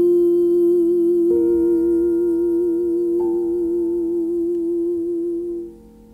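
A woman humming one long note with vibrato, while other held notes join in about a second in and again about three seconds in. The music stops suddenly near the end.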